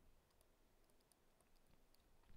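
Near silence with a few faint, light clicks of a stylus tapping and writing on a tablet screen.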